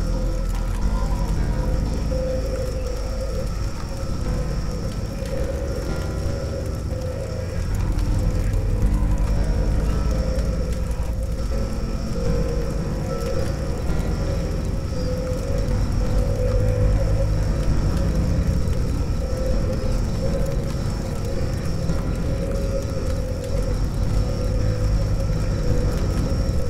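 Experimental noise music: a dense, unbroken drone with a sustained moaning tone in the middle range, a thin high whine and heavy low rumble. It gets somewhat louder about eight seconds in.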